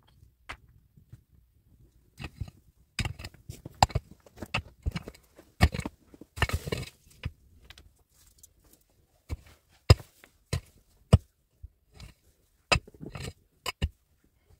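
Digging into stony soil under a rock with a wooden stick and bare hands: irregular sharp knocks and clicks of stick and stones, with a longer scraping rush about six and a half seconds in.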